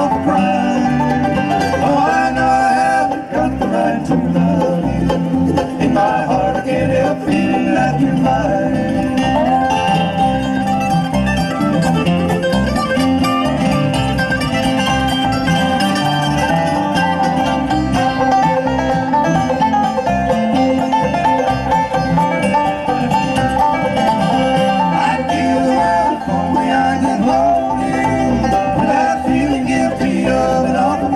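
Live bluegrass band playing an instrumental break: banjo, mandolin, acoustic guitar and electric bass, with sliding melody lines over the rhythm.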